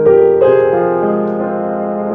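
Boston GP178 grand piano, a Steinway-designed instrument, being played: chords struck at the start and again about half a second in, with the notes ringing on between new attacks.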